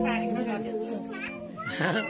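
Children chattering and calling out around the cake, with one loud high shout near the end. Under the voices a held musical chord of steady tones fades away over the first second and a half.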